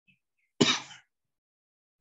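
A person clears their throat once, a short, sudden rasp about half a second in.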